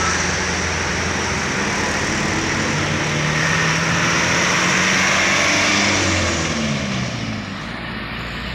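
Engines of heavy trucks passing close by, running loud over steady tyre and road noise. About two thirds of the way through, an engine note falls in pitch as a truck goes past, and the sound then eases a little.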